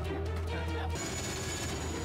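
Quiet background music from a TV episode's soundtrack, with a low steady drone that fades out about halfway through.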